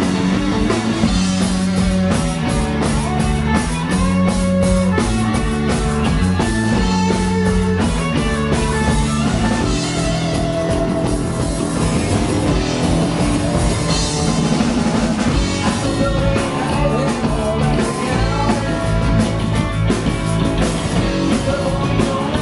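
Live rock band playing loud and steady: distorted electric guitars, electric bass and a drum kit, heard close up from the stage.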